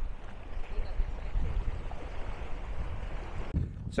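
Wind rumbling and buffeting on the microphone over a steady rush of outdoor noise, with a short lull just before the end.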